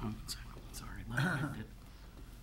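Quiet, muffled murmuring from a person near the microphone, a brief half-second of low speech about a second in, with a couple of faint clicks before it.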